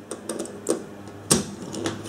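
A few light clicks and knocks of plastic and metal as a wire's spade connector is fastened under the red terminal knob of a plastic battery holder, the loudest knock a little past halfway.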